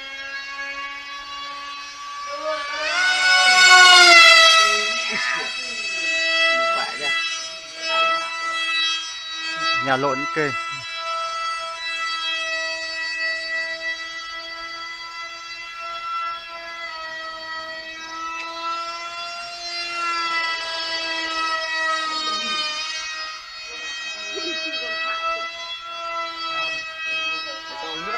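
Mini remote-control model plane's electric motor and propeller giving a steady high whine. It rises in pitch and loudness about three seconds in as the throttle opens, then holds with small shifts in pitch.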